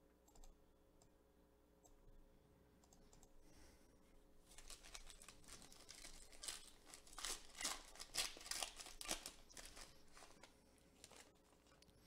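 A Panini Select basketball card pack wrapper being torn open and crinkled by hand. A fast run of crackling, clicking wrapper noise starts about four and a half seconds in, after near silence, and dies away near the end.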